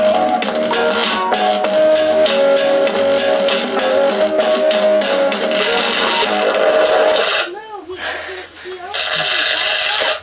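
Guitar music played loud through a cheap speaker driver being pushed toward blowout, thin with no deep bass. The music drops out about seven and a half seconds in, and a loud harsh burst follows near the end.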